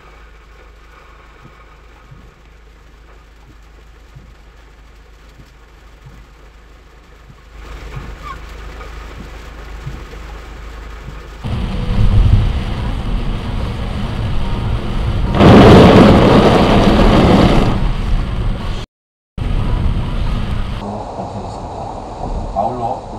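Rain and road noise heard from inside cars driving in heavy rain. The noise steps up in loudness twice. The loudest moment is a rushing burst of noise lasting about two and a half seconds, a little past the middle.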